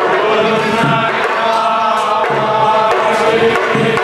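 A large group of men chanting a temple recitation together in unison, many voices moving as one in a continuous chant.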